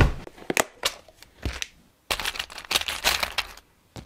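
Handling noise from small objects being moved: a few sharp knocks and clicks, then after a brief break about a second and a half of dense rustling and clattering.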